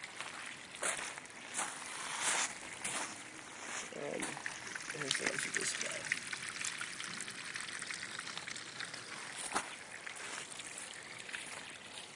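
Water trickling out of a bell siphon's PVC outlet into a four-inch corrugated drain pipe as an aquaponic grow bed drains. The flow is a steady splashing, with a few short knocks over it.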